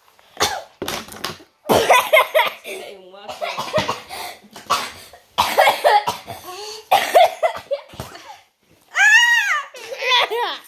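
A woman laughing and coughing in short bursts. Near the end, a young child's high squeal rises and falls.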